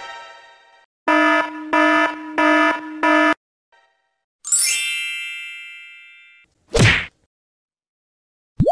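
A run of separate stock sound effects: four evenly spaced pitched electronic beeps, then a bright ring that dies away over about two seconds, then a short, hard whack.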